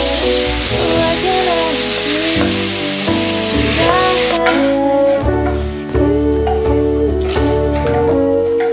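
Chopped tomatoes sizzling as they are stir-fried in a little oil in a frying pan, over background music. The sizzling stops about four seconds in, leaving only the music.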